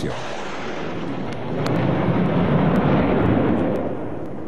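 Military aircraft flying over in formation: a steady rushing engine noise that swells to its loudest about three seconds in, then eases off.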